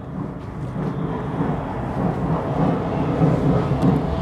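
Steady low rumble of outdoor city noise, mostly distant road traffic, coming in through a window as it is opened; it grows louder over the first two seconds or so.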